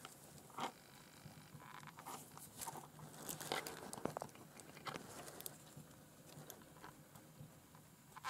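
Faint, scattered small clicks and rustles of a hand handling a USB cable, over quiet room tone with a low steady hum.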